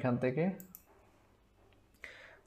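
Computer mouse clicking, once about 0.7 s in and faintly again near the end, as a search suggestion is picked.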